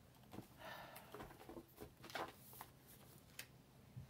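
Faint rustling and light taps of a stack of paper planner pages being picked up and moved by hand.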